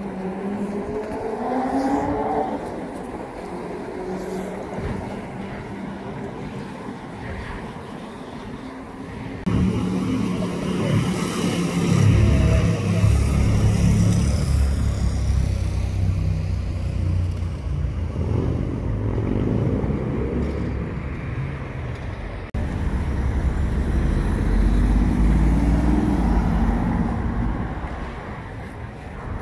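City street traffic: cars passing on a busy road, with an engine rising and falling in pitch near the start. About a third of the way through the sound jumps abruptly to a heavier, louder low rumble of traffic, and jumps again later, with more engines passing.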